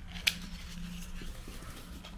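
A slim cardboard cosmetics box being picked up and handled, with one sharp tap about a quarter second in, over a steady low hum.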